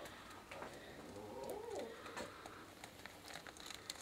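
Faint clicks and ticks of a plastic bottle being handled and tipped, with one short low rising-then-falling hum about a second and a half in.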